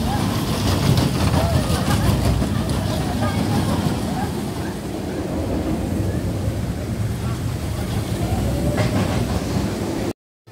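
A small family roller coaster train running along its steel track, with a steady rumble and a light clickety-clack rattle as it passes, and riders' voices over it.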